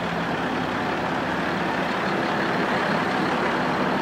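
Fire trucks idling at the curb: a steady engine drone under city street noise.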